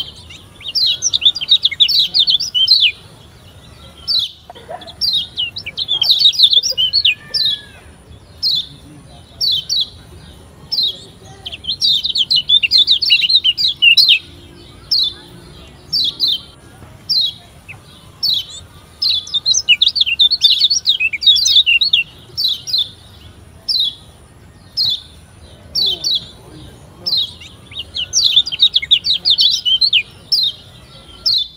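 Kecial kuning (Lombok yellow white-eye, a Zosterops) singing in high, thin chirps. Rapid chattering runs of a second or two come several times, with single short chirps repeated at a steady pace between them.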